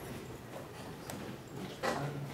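Scattered small knocks and clicks in a room, with one louder knock near the end.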